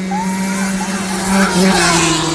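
Engines of racing vehicles holding a high, steady note, growing louder as they come up and pass close by near the end.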